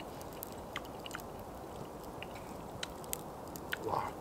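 A person chewing a mouthful of food with the mouth closed, small sharp clicks scattered through it, over a steady low background hiss.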